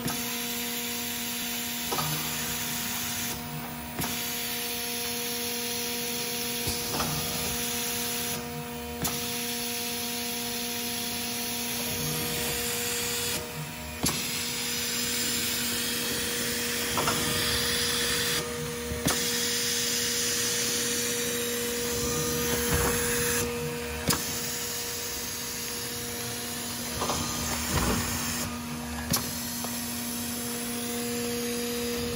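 D&K Europa System B2 laminating machine running steadily: a constant motor hum and hiss, with irregular clicks and knocks every few seconds as printed sheets are fed through its rollers.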